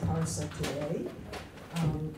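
A woman's voice speaking through a handheld microphone in a small room, with short pauses between phrases.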